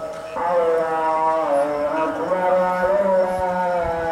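A man's voice chanting, with "Allah" transcribed earlier in the same chant, in long, held notes that waver and glide in pitch. There is a short break at the start, and the chant resumes about a third of a second in.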